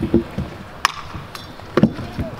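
Stunt scooter's wheels and deck knocking on a concrete skatepark ramp: a few sharp clacks, the loudest a little under a second in, with a couple more near the end.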